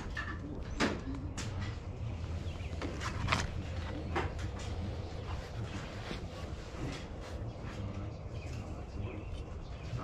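Scattered light clicks and rustles of objects being handled, over a low steady rumble.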